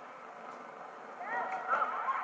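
Arena crowd noise, with several spectators' voices calling out over it from a little past halfway, the level rising.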